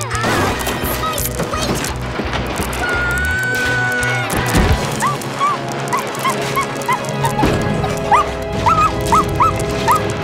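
Cartoon background music, with a run of short, high-pitched yips from an animal, about two a second, in the second half.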